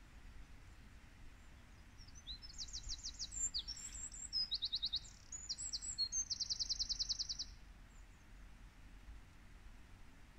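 A songbird singing a fast, varied song of rapid trills, from about two seconds in until about seven and a half seconds.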